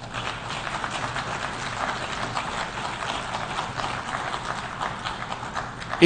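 Audience applauding: many hands clapping in a dense patter that starts suddenly and tapers off near the end.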